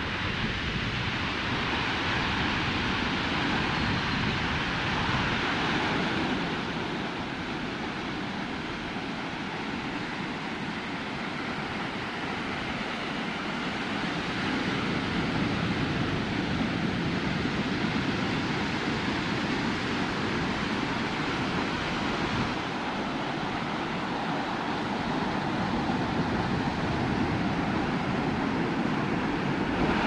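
Ocean surf breaking on a sandy beach, a steady wash of noise that swells and eases every several seconds, with wind buffeting the microphone.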